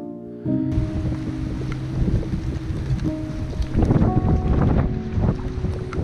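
Strong wind buffeting the microphone, with choppy lake water, starting about half a second in, over gentle background music with held notes.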